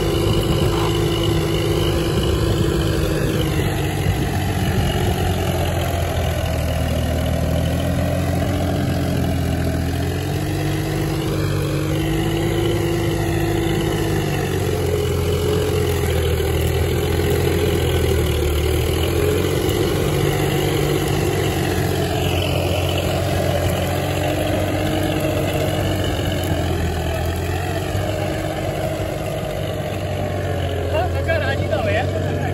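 VST Zetor 5011 tractor's three-cylinder diesel engine running steadily under load while pulling a tine cultivator through dry field soil. Its pitch wavers slightly a few times.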